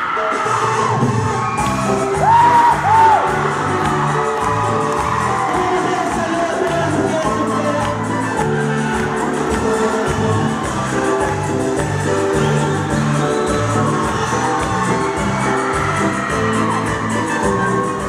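A student band playing live: guitars and drums with a singer on a microphone, heard through PA speakers. About two to three seconds in there are a couple of short whoops over the music.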